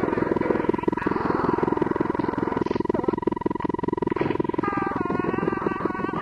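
Experimental analogue synthesizer music from a Yamaha CS-5 fed through its external input, heavily filtered and LFO-modulated. A rough, rapidly pulsing low drone runs under a steady high tone, and about five seconds in a wavering stack of pitched tones comes in.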